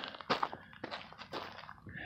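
Footsteps on a gravel dirt road, several steps in a row.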